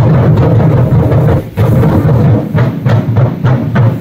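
Ensemble of large Vietnamese festival drums beaten fast and loud by a drum troupe, with a brief break about a second and a half in.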